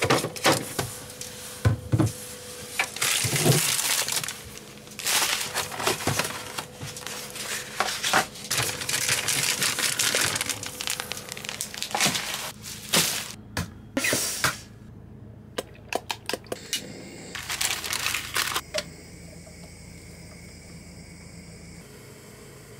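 Plastic food packaging crinkled and torn open by hand, in a dense run of rustles with a few small knocks; it quietens for the last few seconds.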